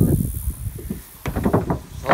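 Rustling and footsteps of someone walking through tall grass and weeds, with irregular low rumbling and soft knocks.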